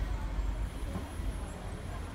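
Railway platform ambience: a steady low rumble with faint voices, and a thin high steady tone that starts just after half a second in.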